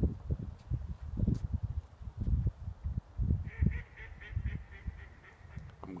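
Geese honking in a quick run of short calls from about halfway in, over irregular low rumbling.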